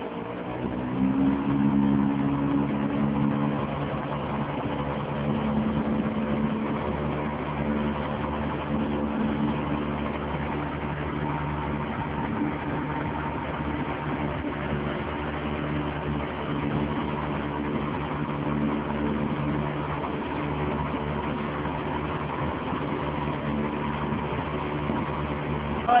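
A small open boat's motor running under way. Its pitch rises over the first couple of seconds as it speeds up, then it holds a steady drone.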